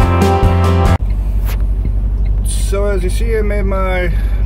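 Background guitar music that cuts off abruptly about a second in, followed by a semi-truck's diesel engine idling with a steady low pulsing hum, heard inside the cab.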